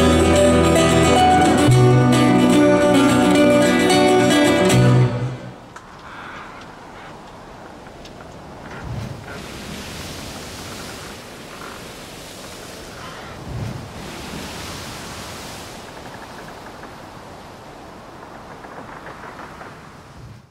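Acoustic guitars and double bass playing the closing notes of a live song, stopping about five seconds in. Faint steady noise follows.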